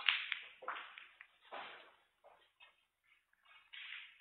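Snooker balls knocking: a few sharp clicks with a short ring after each, about half a second to a second apart and fading, the loudest at the start, as the cue ball runs on and settles after a shot.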